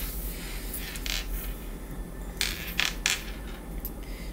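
Tarot cards handled on a tabletop: a handful of light, sharp taps and slaps as cards are picked up and laid down, with faint rustling of card stock between them.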